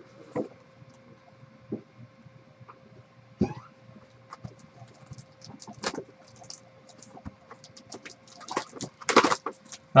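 A cardboard trading-card hobby box being opened by hand: scattered taps, clicks and scrapes as the lid comes off and the inner box is worked open. A louder rustle and scrape comes about a second before the end, as the packs are pulled out.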